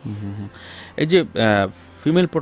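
A person's voice making drawn-out hum or vowel sounds with no clear words: a short one at the start, then a longer one about a second in that rises in pitch.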